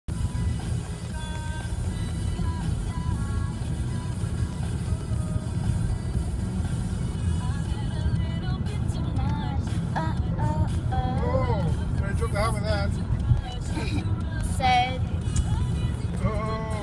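Steady low rumble of a car's road and engine noise inside the cabin while driving, with music playing over it and a voice joining in from about eight seconds in.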